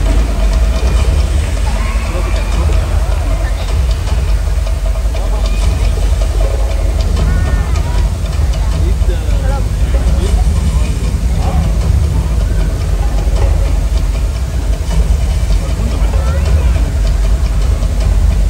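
Staged heavy rain pouring down onto a show pool: a steady, loud rushing with a deep rumble under it, and audience voices over it.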